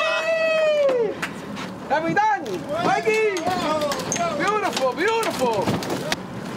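Men shouting and whooping in excitement, high calls that rise and fall with no clear words, over scattered knocks on the boat deck. It is cheering as a yellowfin tuna is gaffed and brought aboard.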